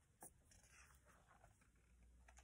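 Near silence, with a faint rustle of a hardcover picture book's paper pages being handled as it is opened, and one small tap about a quarter second in.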